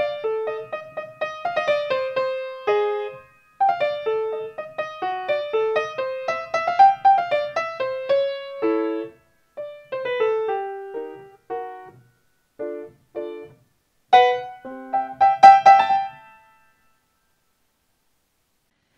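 Upright piano played with both hands: short phrases of separate notes broken by brief pauses, closing with a quick burst of the loudest notes about two seconds before the end, after which it falls silent.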